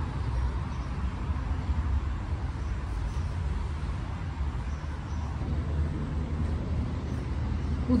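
Steady low rumble of distant street traffic, with no distinct events.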